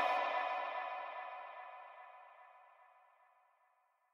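The closing held chord of an electronic hard dance track ringing out with echo after the beat has stopped, fading away over about two and a half seconds.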